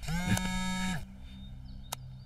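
A man's voice holding one drawn-out, low, steady note for about a second, then a single short click near the end.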